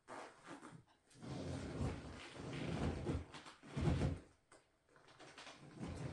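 Clothing being fastened on: long rasping pulls with rustling from about a second in, a shorter pull near the four-second mark, and fainter rustling at the end. A long boot zip drawn up a tight shaft would make this sound.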